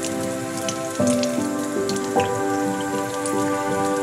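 Water running from a bathroom tap into the sink, a steady hiss with small splashes, under soft background music.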